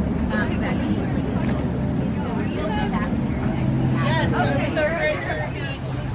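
People talking nearby among market-goers, over a low steady rumble of road traffic.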